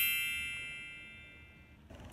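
A chime sound effect: many bell-like tones, struck in a quick rising run just before, ring on and fade away steadily, cutting off near the end.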